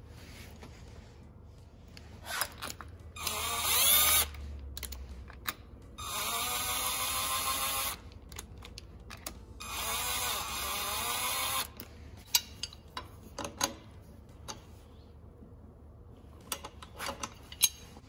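Cordless impact driver spinning the three cam gear bolts into the LS camshaft in three short runs, about a second, two seconds and two seconds long, its motor speeding up and slowing down. It runs them down only until they seat, without hammering. Light metallic clicks of the timing chain, gear and bolts being handled come in between.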